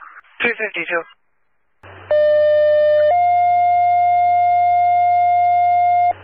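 Two-tone sequential pager tones sent over the dispatch radio: one steady tone for about a second, then a slightly higher tone held for about three seconds, with a low hum beneath. They alert the on-call crew to a fire standby page.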